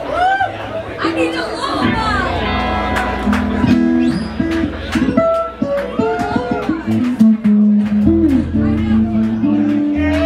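A live rock band starts playing about two seconds in: electric guitar and bass guitar notes with sharp hits, over the voices of the crowd.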